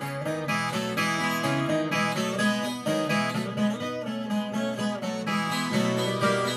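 Solo viola caipira, the ten-string Brazilian folk guitar, picked in a fast instrumental run of many quick notes in moda de viola style.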